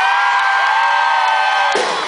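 One long, steady high note that slides up at the start and cuts off abruptly near the end, over crowd cheering.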